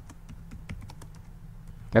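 Computer keyboard being typed on: a run of light, irregular key clicks.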